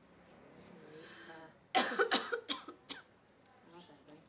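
A woman coughing in a short fit of about five quick coughs, starting a little under two seconds in, the first the loudest, while her throat is being pressed during a neck massage.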